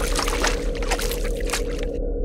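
Outro sound effects for an animated ink-splash title card: a steady low drone with a deep hum beneath it, dotted with a quick run of sharp splashy clicks.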